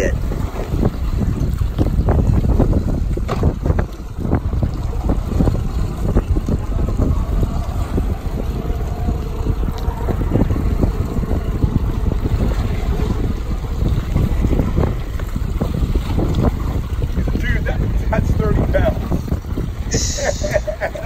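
Wind buffeting the microphone over choppy open water, with waves splashing against a drifting boat; a loud, steady rumble with irregular gusts and slaps.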